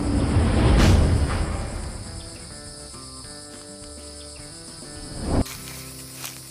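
Cinematic title sting: a deep boom hit that rumbles away over about a second and a half, then held music tones, then a rising whoosh that cuts off suddenly about five and a half seconds in.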